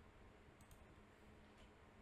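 Near silence: room tone with a few faint, short clicks, a couple about half a second in and one more past the middle.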